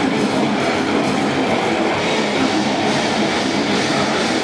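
Death metal band playing live at full volume: distorted guitars and rapid drumming on a full drum kit blend into a dense, unbroken wall of sound.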